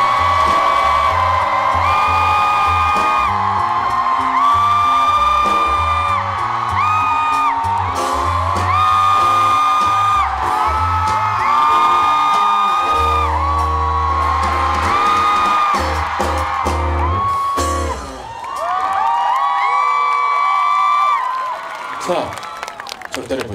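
Live pop band playing, with drums, bass and guitars under a wordless sung line of long, held high notes, and whoops from the crowd. The bass and drums drop out about eighteen seconds in, leaving the voices and guitars.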